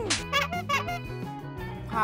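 Background music with a comic cartoon-style sound effect: a few quick, squeaky, high-pitched blips in the first second.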